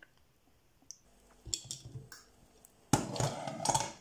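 Kitchen handling sounds: a few faint clicks and knocks, then about a second of louder clattering and rustling near the end as a bowl and pot are handled at the stove.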